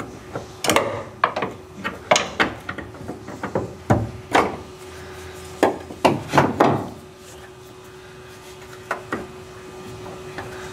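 Long screwdriver working at a car door hinge spring, with metal tapping, clanking and scraping on metal in an irregular run of knocks. The knocks stop about seven seconds in.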